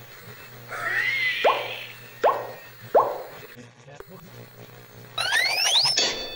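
Cartoon sound effects: a swooping sound about a second in, then three short boing-like hits about three-quarters of a second apart, each dropping quickly in pitch, and near the end two rising whistle-like glides.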